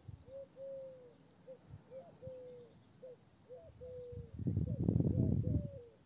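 A bird calling in a run of short, clear, low cooing notes, about two a second, each starting with a little upward lift. About four and a half seconds in, a louder rustling noise lasts for about a second.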